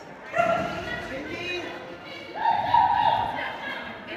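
A dog barking while running an agility course, with one louder, held bark a little past two seconds in, over people talking.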